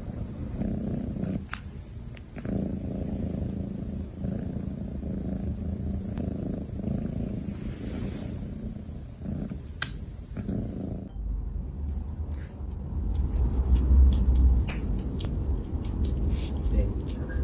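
A long-haired domestic cat purring steadily in pulsing stretches while being stroked. In the last few seconds, rustling and sharp clicks of handling close to the microphone come in over a deeper rumble.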